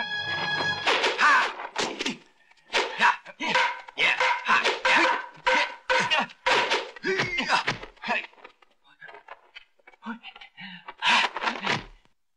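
Dubbed kung fu film fight sound effects: a quick run of punch and staff-strike thuds and whooshes mixed with the fighters' shouts and grunts. A music cue with held notes ends about a second in, and the blows thin out and get quieter near the three-quarter mark before a last loud flurry.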